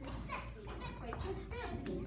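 Young children chattering and calling out, several high-pitched voices overlapping with no clear words.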